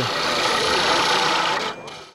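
Wood lathe spinning a curly maple pen blank while a turning tool cuts it, a steady rough hiss of the cut that fades out near the end.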